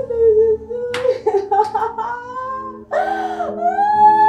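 A woman wailing and sobbing in mourning over a dead body: long, drawn-out cries that rise and fall in pitch, with a short catch of breath between them.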